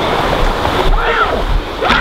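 Wind rumbling and buffeting on a handheld camcorder's microphone as it is swung around outdoors, with a brief snatch of a voice about a second in.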